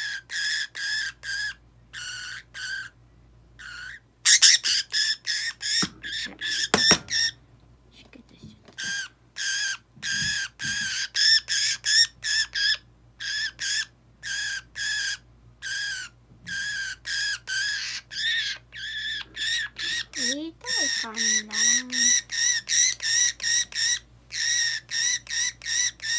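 Budgerigar held in the hand giving a long run of short, harsh calls, about three a second with a couple of brief pauses: the alarm calls of a restrained bird.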